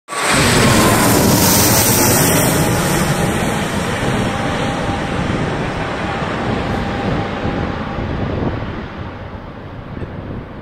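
A low-flying business jet passing overhead: its engines make a loud roar, loudest in the first two seconds, that fades steadily as the jet flies away, with a faint whine that slowly falls in pitch.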